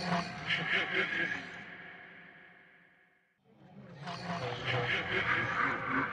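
An eerie, echoing sound effect played twice. Each starts suddenly, peaks within its first second and dies away over about three seconds.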